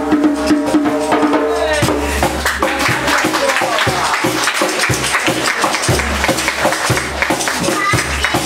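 A small acoustic band playing live, with fiddle and acoustic guitar over a steady percussive beat. About two seconds in, long held fiddle notes give way to quicker, busier playing.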